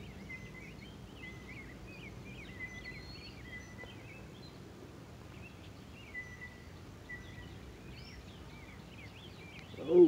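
Faint birdsong: scattered short chirps and brief whistled notes over steady outdoor background noise.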